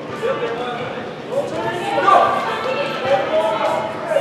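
Indistinct shouting and chatter from players and spectators, echoing in a large indoor soccer arena, with a few thuds of the ball being kicked.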